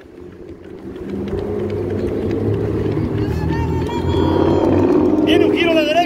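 A motor vehicle's engine running with a steady low hum, growing louder over the first two seconds and then holding.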